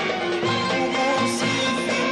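Live Arabic band music from a concert: instruments carrying a melody over a steady drum beat about twice a second.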